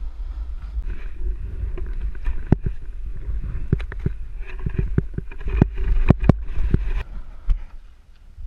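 Snowboard sliding and scraping over rough snow, with a steady low wind rumble on the helmet-mounted action camera's microphone. Many sharp knocks and clicks come from the board hitting bumps and brush, thickest in the middle of the ride.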